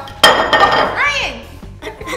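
Two thick halves of a gummy candy donut dropped onto a table, landing with a loud thud and a clink against a plate. A brief rising-then-falling whoop follows, over background music.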